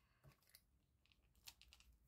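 Faint fingernail clicks and scratches from picking the backing papers off foam dimensionals on a cardstock panel. There are a few light ticks near the start and a small cluster about a second and a half in.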